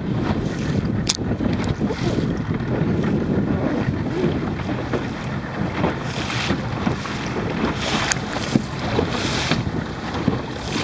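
Strong wind buffeting the microphone over the wash of choppy water, with swells of hissing spray about six seconds in and again near the end. Two sharp clicks, one about a second in and one near the end.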